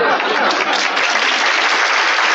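Sitcom studio audience applauding steadily with laughter mixed in, a dense unbroken wash of clapping in reaction to a punchline.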